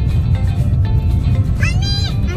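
Steady low rumble of a car driving on a sandy dirt track, with music playing, and a short high meow-like cry that rises and falls near the end.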